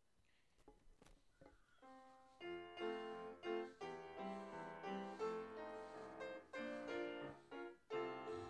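A few faint clicks and knocks, then about two seconds in a piano starts playing chords: the instrumental introduction to a special song, with no singing yet.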